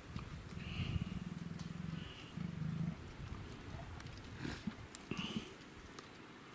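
Leopard growling twice: a long, low growl of about a second and a half, then a shorter one. A couple of soft knocks follow near the end.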